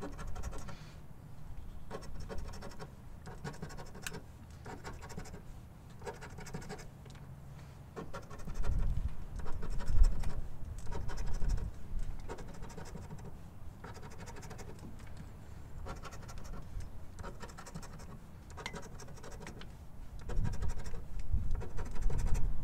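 A coin scratching the coating off a scratch-off lottery ticket in repeated short strokes, louder for a few seconds in the middle.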